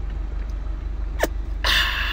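A man taking a swig from a glass bottle of malt drink and then letting out a loud breathy "aah" near the end. Under it runs the low steady hum of the idling car engine.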